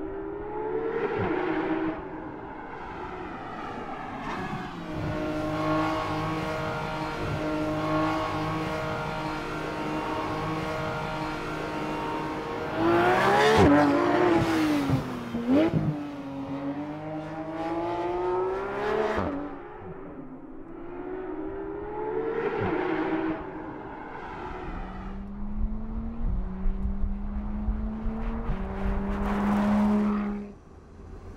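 Porsche 911 GT3 RS's naturally aspirated flat-six engine revving hard, its pitch climbing and dropping again and again through gear changes. It is loudest about halfway through, in a sharp rising and falling sweep as the car passes close by.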